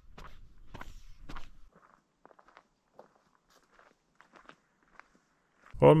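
Footsteps of a person walking in 3D-printed flexible-filament mesh shoes: a few soft steps in the first two seconds, then only faint scattered ticks.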